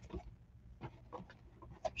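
Quiet handling sounds: a few faint soft clicks and rustles of small items being picked up and sorted on a desk.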